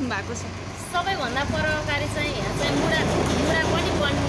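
A woman talking, with a low steady rumble underneath.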